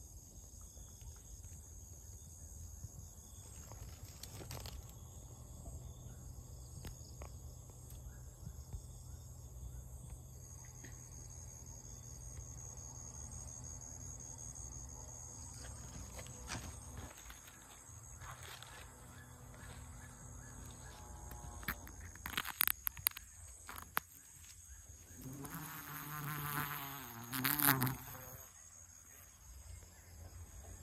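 Paper wasps buzzing in flight around their nest: a low droning hum that swells and wavers loudest near the end as one passes close, over a steady high-pitched insect trill.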